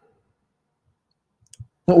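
Near-total silence, broken about one and a half seconds in by a couple of short, faint clicks, then a man starts speaking just before the end.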